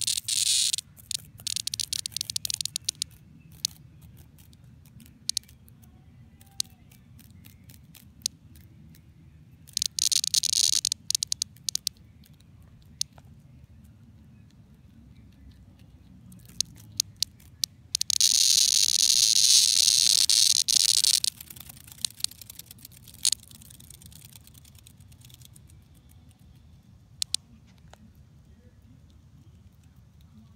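A cicada, pinned on its back by a hornet, gives intermittent crackly buzzing bursts as it struggles. There are several short bursts, the longest and loudest about three seconds long, with a few single clicks later on.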